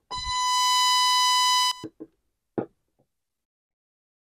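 FG-200 DDS function generator's 1 kHz exponential-decay waveform played through an audio amplifier and speaker: a steady tone with many evenly spaced overtones, lasting just under two seconds before cutting off. A few short clicks follow.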